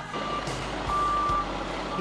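Vehicle reversing alarm beeping, a single steady tone about once a second, over the steady noise of trucks at a fire scene.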